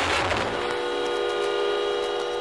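Breakdown in a 1990s hardcore techno DJ mix: the kick drum is out and, from about half a second in, a held chord of several steady tones sounds with no beat under it.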